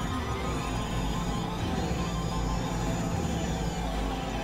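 Experimental electronic synthesizer drone music: a dense, noisy layered wash of tones over a steady low drone, with a faint rising sweep in the first half.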